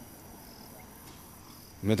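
Faint, steady, high-pitched insect trill, like crickets, during a pause in speech. A man's voice starts near the end.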